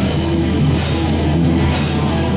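Heavy metal band playing live, with distorted guitars, bass and drums driving a steady beat. Short bright cymbal-like accents come a little under a second in and again near the end.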